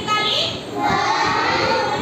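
Young children's voices in a drawn-out, sing-song answer, the voices held on one long stretch about a second in.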